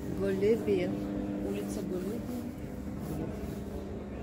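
Voices talking over a steady low mechanical hum, which fades out about three seconds in.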